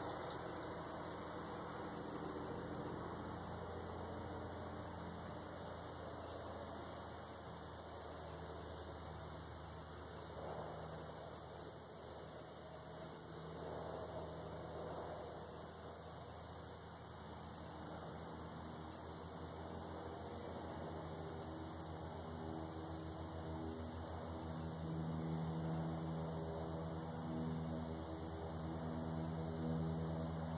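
Crickets trilling steadily at a high pitch, with another insect chirping about once a second. A low engine hum grows louder in the second half.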